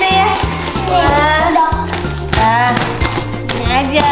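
Background music: a song with a singing voice over a steady, regular bass beat.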